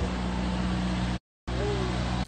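A steady low engine hum with faint voices in the background. The sound cuts out completely for a moment a little over a second in, then resumes.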